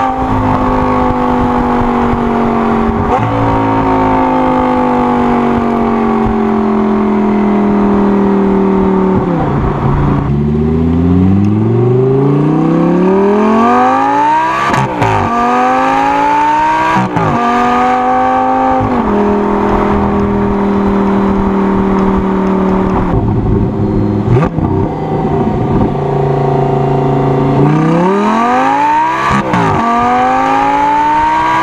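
Audi R8 V10's V10 engine through a VelocityAP Supersport stainless-steel X-pipe exhaust, heard from the back of the car on the move. It holds a steady, slowly falling note for about ten seconds, then accelerates with rising revs through two quick upshifts, settles to a steady cruise, and near the end revs up again into another shift.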